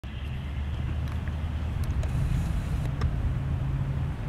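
Outboard motors of a small Coast Guard boat running at low speed, a steady low hum.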